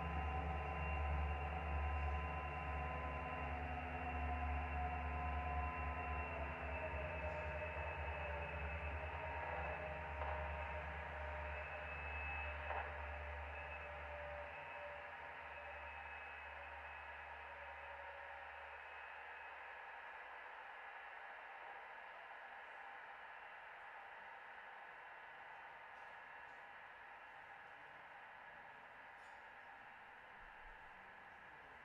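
Electronic synthesizer drones: sustained tones, some slowly gliding downward, over a deep bass drone. The sound fades out gradually as the piece closes; the bass drops away about halfway through, leaving faint hiss by the end.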